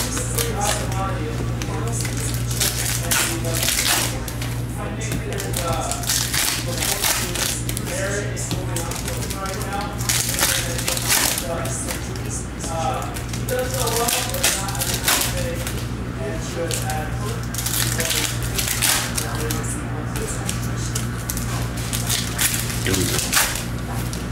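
Trading cards being riffled and flipped through by hand, with short crinkles and rustles of foil pack wrappers, over background music with a faint singing voice and a steady low hum.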